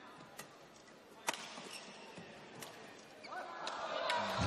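Low arena room tone between points in a badminton match, broken by a few sharp taps, the loudest about a second in. Voices start near the end.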